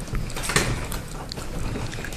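Heavy metal door of an old freight elevator being pulled open: a few short metallic clanks and rattles, the loudest about half a second in.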